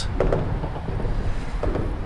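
Steady low rumble of outdoor background noise with no distinct event standing out.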